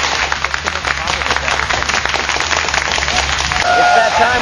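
Studio audience applause: dense, irregular clapping over a steady low hum. It gives way to a voice near the end.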